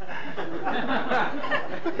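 Several people laughing and chuckling at once, a low jumble of overlapping voices.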